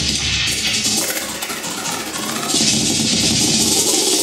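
Electronic granular synthesis from the ag.granular.suite granulator in Max/MSP: a dense, grainy texture over a low rumble, shifting as several presets are blended by touch. A bright hiss swells over the second half.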